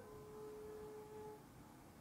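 Faint ambient meditation music: one soft held tone that steps down a little at the start and fades out about a second and a half in, leaving near silence.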